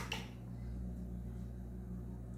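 Steady low electrical hum, with a light knock right at the start as a glass bowl touches a plastic blender jar while raw eggs are poured in.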